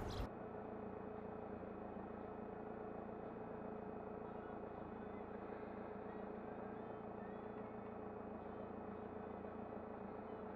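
Motorhome engine idling while stationary, heard faintly from inside the cab: a steady low hum with a constant mid-pitched tone above it.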